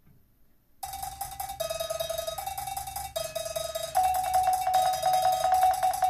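Opening of a live band song: after a short silence, a high note is struck over and over very rapidly from about a second in, stepping between two pitches, with a jump in loudness about four seconds in.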